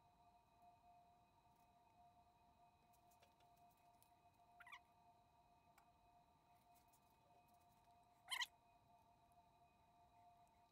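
Near silence: room tone with a faint steady high whine of several tones, and two brief faint sounds about five and eight seconds in.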